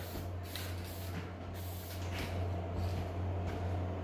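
Aerosol can of Dupli-Color vinyl spray paint hissing as it sprays, its nozzle starting to sputter. A steady low hum runs underneath.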